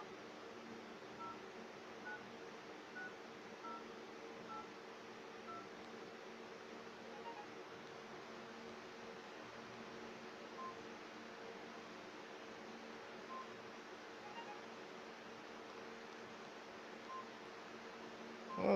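Phone keypad touch tones as a number is dialed: short two-tone beeps about one a second for the first several seconds, then a few scattered beeps later on, over a faint steady hum.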